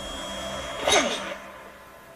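A single short breathy vocal sound about a second in, falling in pitch, like a quick exhale or sniff-like burst, over a quiet background.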